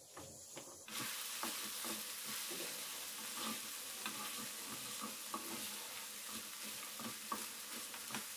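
Sago pearls and vegetables sizzling in a frying pan as a wooden spatula stirs them, with frequent small clicks and scrapes of the spatula against the pan. The sizzle starts suddenly about a second in.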